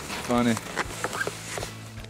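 Mostly speech: a man says one short word, with scattered small clicks and faint steady background music under it.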